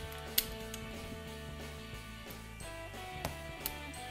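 Background music, with a few sharp clicks of a hand staple gun firing staples into upholstered fabric on a chair seat: one about half a second in, then two close together near the end.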